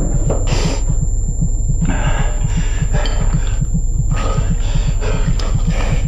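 A deep, fast pulsing throb like a racing heartbeat, about four to five beats a second, from the film's soundtrack. Over it come short splashes of water from hands at a sink, about once a second.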